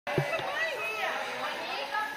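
Several people talking and chattering at once, with a short bump just after the start.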